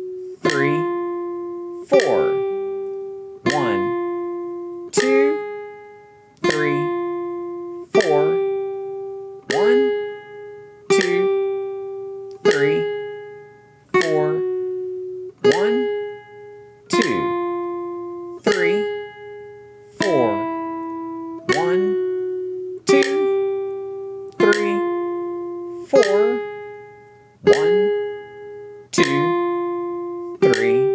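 Nylon-string classical guitar playing a slow single-note melody, one plucked note about every second and a half, each ringing and fading before the next.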